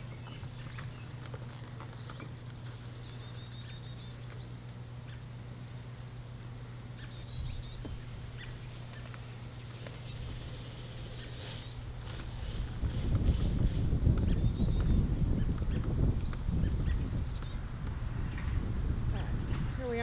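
A songbird repeating a short, high trilled phrase every few seconds, over a steady low hum. From about two-thirds of the way through, a louder low rumble joins in.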